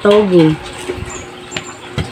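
A woman's voice finishing a word with falling pitch, then low room sound with a few faint clicks and a faint steady hum.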